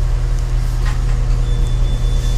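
Steady low drone of a diesel multiple unit's underfloor engine and running gear, heard inside the passenger saloon.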